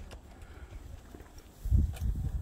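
Wind buffeting the phone's microphone: an irregular low rumble that surges into stronger gusts near the end.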